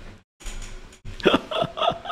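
A man laughing: about a second in he breaks into a run of short bursts of laughter, about four a second.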